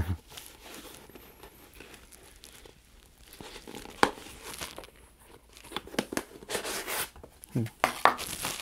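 Rustling and scraping as an insole is worked by hand out of a Nike Mercurial Vapor 13 Elite football boot. There is a sharp click about four seconds in and a denser run of rustling near the end.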